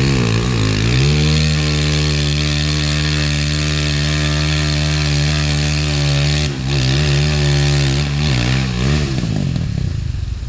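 A trials motorcycle engine running at a steady pitch. The revs drop and pick up again about a second in and a few more times in the last few seconds, and the sound fades near the end.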